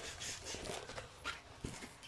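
Faint rustling and crinkling of a rolled diamond-painting canvas being handled, with a light knock about one and a half seconds in.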